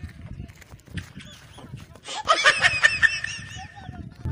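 Low rumbling noise, then about two seconds in a loud burst of high-pitched laughter with quick repeated rising-and-falling squeals, lasting under two seconds.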